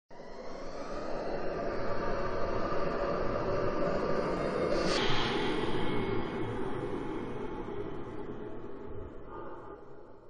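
Sound effects of an animated logo intro: a dense rushing rumble that builds up, a sharp swish about five seconds in followed by a faint high whine, then a gradual fade.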